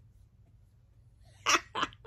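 Low room hum, then two quick, loud, breathy gasps from a woman close to the microphone about one and a half seconds in.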